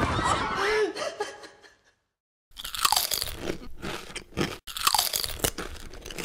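A film creature sound effect: the Monster Book of Monsters snapping, chomping and crunching as it bites. It cuts to dead silence for about half a second around two seconds in, then the chomping starts again.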